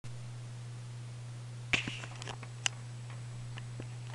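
A steady low electrical hum with a few sharp clicks and knocks, the loudest a little before the middle and another soon after. This is handling noise while the camera is moved; no music is playing yet.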